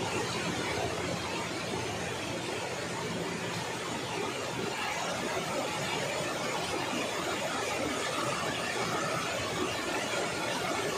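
Steady rushing of a fast-flowing river over rocks, an even wash of water noise.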